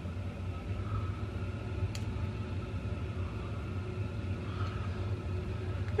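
Steady low hum of background room noise, with one faint click about two seconds in.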